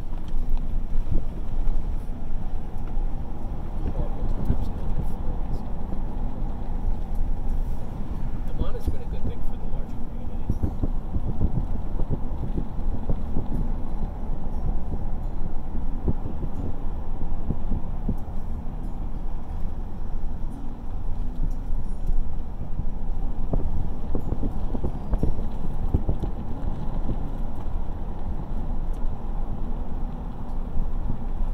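A car on the move: a steady low rumble of road and engine noise, broken by frequent small knocks and rattles.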